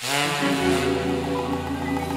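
Music: the orchestral accompaniment of a Japanese popular song comes in suddenly at full volume after a near pause and holds a sustained chord.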